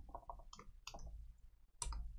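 Faint keystrokes on a computer keyboard: a quick run of clicks in the first second or so, then a louder click near the end.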